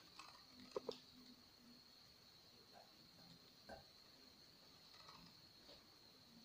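Near silence: quiet room tone with a faint steady high-pitched whine and a few soft clicks, a pair of them just under a second in.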